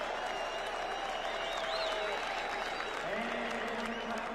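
Large arena crowd applauding and cheering steadily, with shrill whistles gliding through the noise.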